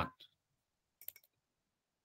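Two or three faint, quick clicks from computer input as a value is selected in a code editor.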